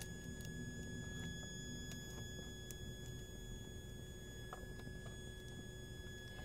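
A faint, steady high-pitched whine with fainter overtones above it, from a toroidal transformer core singing at the rate it is pulsed at, about 1.6 kHz. A low hum sits under it, with a few faint clicks as magnets are shifted on the core.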